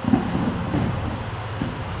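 A thrown aikido partner landing on tatami mats at the end of a hip throw (koshinage): a dull thud just after the start, then lighter thumps and scuffs as both shift on the mats.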